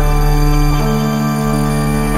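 Electronic music: layered sustained synthesizer tones over a low drone, the chord shifting about three quarters of a second in.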